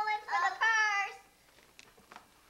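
A young girl singing a few long held notes in a high voice, stopping about a second in; then a quiet room with a faint click near the end.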